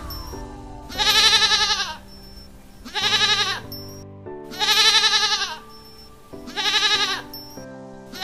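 Goat bleating four times, each a wavering call of about a second, spaced a second or two apart, over background music.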